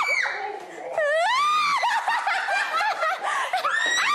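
Several young women shrieking and screaming in fright, long high-pitched wavering cries mixed with nervous laughter.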